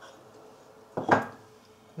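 A single short clink of a ceramic bowl knocking against the countertop or another bowl, about a second in, with a brief ring after it.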